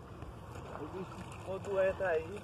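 Men's voices talking quietly, mostly in the second half, over a steady low rumble.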